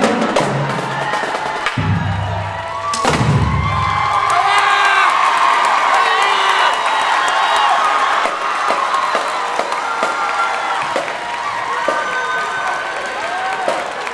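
A marching drumline plays its last bars, with low bass-drum hits, and ends on one loud final hit about three seconds in. A crowd then cheers and screams for the rest of the time.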